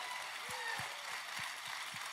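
Audience applauding steadily, with a few faint voices mixed in.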